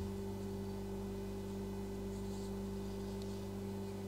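Soft background music: a low sustained chord held steady, with no beat.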